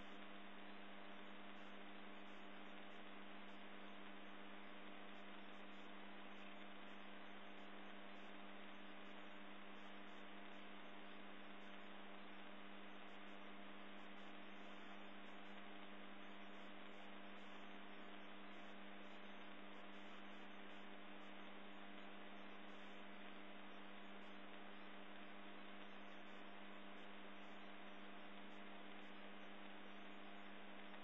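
Steady electrical hum: a low tone with a ladder of evenly spaced higher tones over an even hiss, unchanging throughout, from the running 3D printer's electronics.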